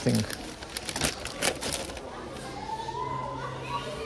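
Plastic wrapping of a nappy pack crinkling and clicking as it is handled, in the first two seconds. After that, a steady low hum of supermarket background with faint distant voices.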